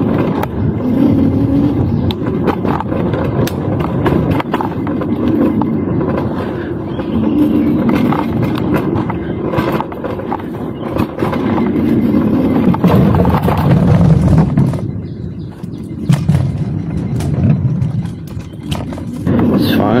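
Electric scooter with solid tyres riding over a bumpy dirt trail: a continuous rumble of rolling noise broken by frequent knocks and rattles from the bumps.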